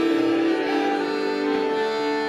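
Piano accordion playing slow, long-held chords between sung lines of a slow ballad, the notes changing only once or twice.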